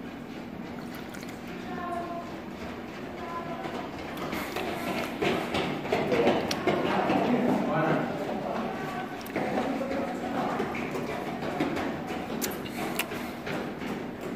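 Indistinct voices of other people in the background, rising and falling, strongest in the middle, over a steady low hum. A few faint clicks come near the end.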